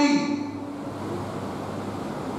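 A man's held word trails off at the very start, then a steady hiss with a faint low hum: the background noise of the room and its microphone and sound system during a pause in speech.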